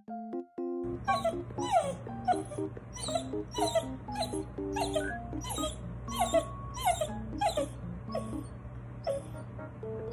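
Bernedoodle dog whimpering in short falling whines while recovering from neutering, over background music with a steady beat of about two strokes a second.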